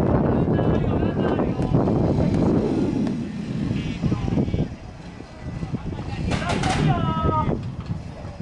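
Wind rumbling on the microphone, loudest in the first three seconds, with players calling out across the field. Near the end comes one long shout that falls in pitch.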